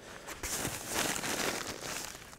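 Brown paper wrapping crinkling and rustling as gloved hands dig into it to lift out a block of dry ice. It starts about half a second in and dies away near the end.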